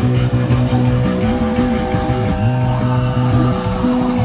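Live rock band playing loudly through a PA, with held notes over a low line that steps in pitch and a few gliding lead notes in the middle.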